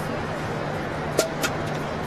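Steady outdoor ambience at a tennis court. A little past a second in come two sharp knocks about a quarter-second apart, the first louder.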